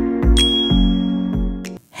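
Intro music of held synth chords over a bass beat about twice a second, with a bright, bell-like notification ding about a third of a second in that rings on. Everything cuts off abruptly just before the end.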